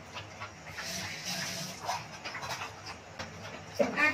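A dog panting, loudest about a second in.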